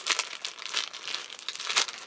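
Clothing packaging crinkling in irregular bursts as it is handled and opened by hand.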